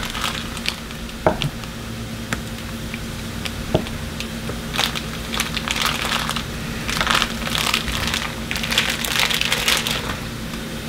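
Chef's knife slicing a block of cheese on a wooden cutting board: a few separate knocks of the blade on the board in the first four seconds, then a denser run of crackly cutting and scraping through the second half.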